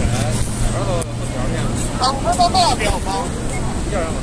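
Short snatches of voices over street traffic noise; a steady low hum stops about a second in.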